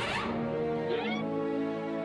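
Cartoon background score with held low notes, joined about a second in by a short, high vocal cry.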